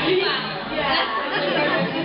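Many people chatting at once, overlapping voices with women's voices among them, echoing in a large hall.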